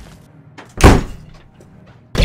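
A single heavy hit sound effect from a fistfight, a punch or kick landing about a second in, falling in pitch as it dies away.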